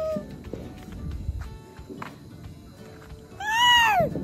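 A baby's high-pitched squeals: a long held squeal that ends just after the start, then a short squeal that rises and falls near the end, with a few faint clicks in the quieter stretch between.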